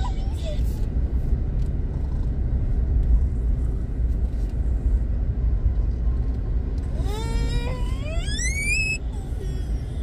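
Steady low rumble of a car driving on a town street, heard from inside the vehicle. About seven seconds in, a high whine rises steadily in pitch for about two seconds.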